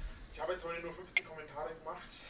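Faint, quiet speech with a single sharp clink of a drinking glass just over a second in.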